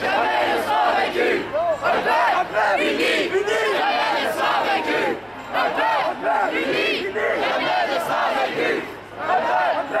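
A crowd of marchers shouting slogans together, many voices overlapping, with short breaks between phrases about halfway through and near the end.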